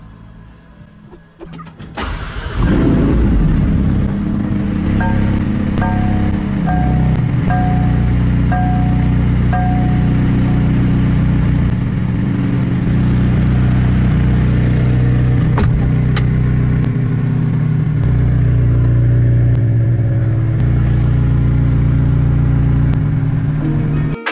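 McLaren Senna's 4.0-litre twin-turbo V8 started from the roof-mounted button: a short crank about two seconds in, catching with a rise in revs, then running at a steady, loud high idle. A chime sounds about six times at an even beat a few seconds after it starts.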